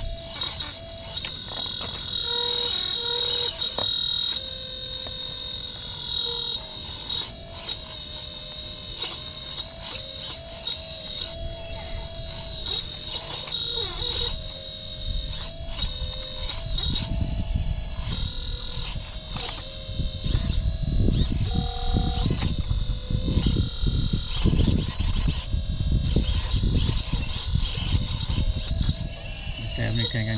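Electric hydraulic pump of a 1/12-scale full-metal RC excavator (Caterpillar 339D replica) running, with a steady high whine and a lower hum that shifts in pitch as the boom, arm and bucket are worked. The owner takes the sound as a sign it needs more hydraulic oil. In the second half, rough scraping and rustling noises come in as the bucket works the dirt and dead leaves.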